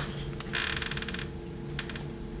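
Paperback book handled: a sharp tap at the start, then its pages riffling for under a second in rapid fluttering clicks, and two light clicks near the end.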